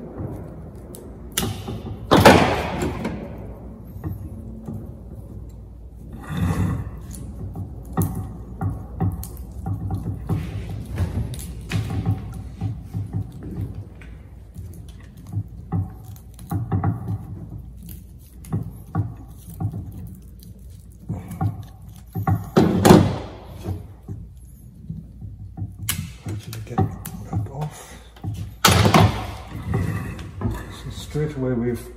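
Hand work with pliers on a juniper bonsai branch, breaking and pulling at a cut stub to strip it into a jin: scattered small clicks, snaps and foliage rustles. Three sharp knocks stand out, about two seconds in, about twenty-three seconds in, and just before the end.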